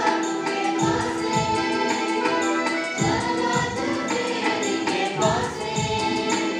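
Live church band playing a Sadri-language entrance hymn, with electronic keyboard, guitar and drums played with sticks, and voices singing the melody.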